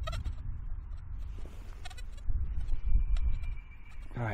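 Uneven low rumble of handling and wind noise on the microphone as a hand moves right up against it, with a faint steady high tone for about a second near the end.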